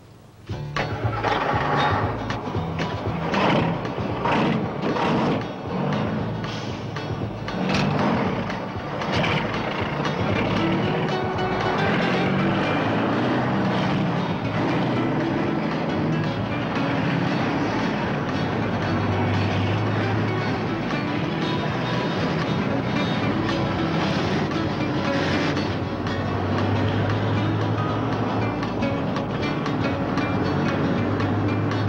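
Film soundtrack music with a stepping bass line, over the sound of diesel semi-trucks running. The sound starts abruptly about half a second in, with a run of sharp hits in the first ten seconds.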